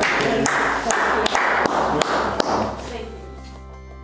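Excited voices in a room, with several sharp claps or taps over the first three seconds. These die away and soft background music with sustained notes fades in near the end.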